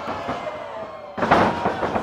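A wrestler's body hitting the wrestling ring's canvas with a loud thud about a second in, over steady background music and crowd noise.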